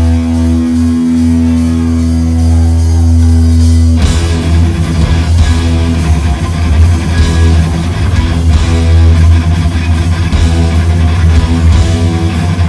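Hardcore punk band playing live: the guitars hold one ringing chord for about four seconds, then the drums and full band come in together.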